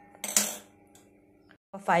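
Two quick, sharp metallic clicks with a short ring, about a quarter and nearly half a second in, from a hand-held spark gas lighter at a gas stove burner. Then near silence until a woman's voice begins near the end.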